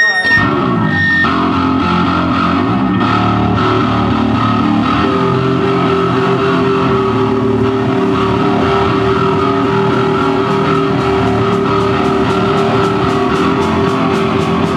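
A punk band's distorted electric guitar and bass ring out sustained chords. A high whine sounds in the first second, and a steady held tone runs from about five seconds in. Faint rhythmic ticks join near the end.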